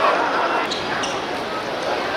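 A football being kicked and bouncing on a hard court: a few sharp thuds, with voices of players and spectators around them.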